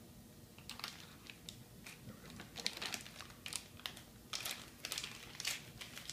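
Plastic M&M's candy bag crinkling as it is handled and tipped to pour peanut butter M&M's into a bowl: faint, irregular crackles that begin about a second in and grow denser.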